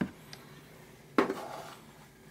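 A hard plastic scoop knocks once against a terracotta dish about a second in as powdered roach food is poured from it, with a lighter click at the start.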